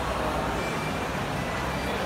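Steady background noise of a shopping mall lift lobby: an even hum and hiss with no distinct events.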